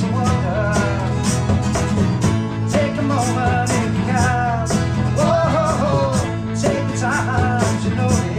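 A small acoustic band playing steadily: strummed acoustic guitars with a regular beat, electric bass guitar underneath, and a bowed fiddle carrying a sliding melody line.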